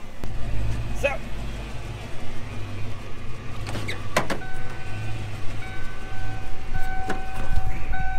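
A Ford Mustang's engine idling as a steady low rumble, with the car's warning chime coming in about halfway and beeping on and off. A few sharp knocks sound around the middle and near the end.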